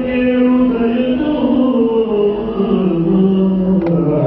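Yakshagana singer chanting a slow sung verse, holding long drawn-out notes that glide down in pitch. A single sharp stroke sounds near the end.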